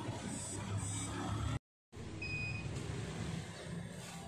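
A single short electronic beep from a handheld infrared thermometer as it takes a forehead temperature reading, over a steady low background hum. Just before the beep the sound cuts out completely for a moment.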